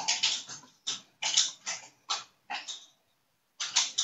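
A dog barking in a quick series of short barks, with a brief pause before the last bark near the end.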